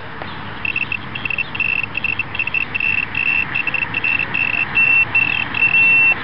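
Kustom Signals ProLite laser speed gun sounding its tone while aimed at an oncoming car: short beeps at a single pitch that come quicker and longer, then run into a steady tone near the end as the gun locks a speed reading despite the car's laser jammer.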